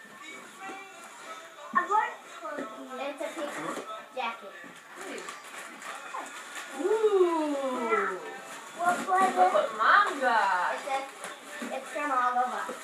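Young children's voices without clear words, including long drawn-out rising and falling calls about halfway through, over faint music from a tablet game.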